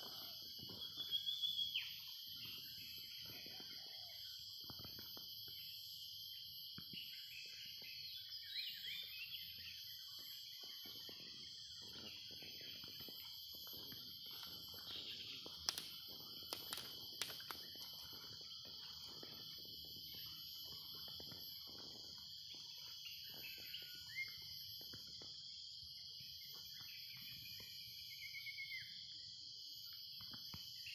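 A steady, high-pitched chorus of insects runs throughout, with a few short bird calls, one about a second in and one near the end. Under it, soft crunches of footsteps on dry leaf litter.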